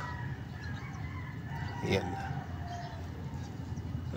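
Faint rooster crowing, thin and held.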